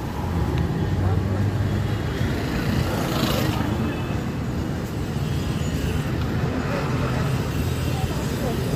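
Street traffic: vehicle engines running steadily with a low hum and road noise.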